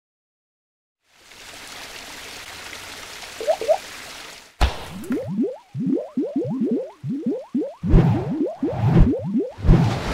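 Sound effects for an animated logo. About a second in, a steady hiss starts and runs for a few seconds. A sharp hit follows, then a quick run of short rising bloops, like drips or bubbles, with low thumps near the end.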